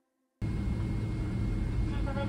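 Cabin noise of a Boeing 777-300ER rolling on the runway after landing: a loud, steady low rumble of engines and wheels that cuts in suddenly about half a second in, after a moment of silence.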